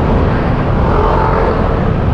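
Honda Click 125i scooter riding in slow traffic: its engine running under a steady low rumble of wind on the microphone.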